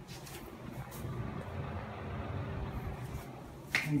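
Steady whir of a running exhaust fan, with uneven low rumbles and light knocks from a handheld camera being carried.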